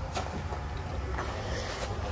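A few faint metallic clicks from a hand working the boot lock of an old Jaguar saloon, over a steady low hum; the lock does not open.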